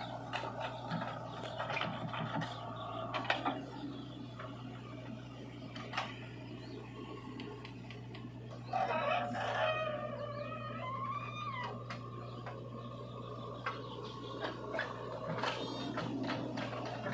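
Diesel engines of a JCB 3DX backhoe loader and a tractor running steadily under scattered knocks and clatter from the bucket and soil. A rooster crows for a couple of seconds about nine seconds in.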